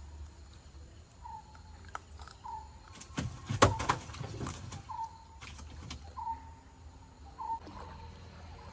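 A bird repeating a short, slightly falling call about once every second and a quarter. About three and a half seconds in comes a brief burst of knocks and rustling, the loudest sound, from a fish and gill net being handled against the side of a wooden dugout canoe.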